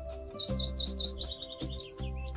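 Soft background music with held notes, over which a songbird sings. About a third of a second in it gives four short hooked whistles, then a quick run of about seven repeated notes, then a few falling notes near the end.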